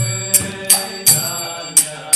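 Devotional kirtan music between sung lines: small hand cymbals struck four times at uneven spacing, each strike ringing on, over a low held note that stops about half a second in.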